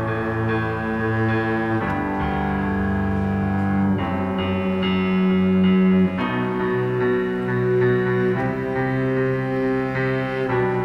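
Small string orchestra with cellos and double bass playing slow, sustained bowed chords that change about every two seconds. The deepest bass notes drop out about six seconds in.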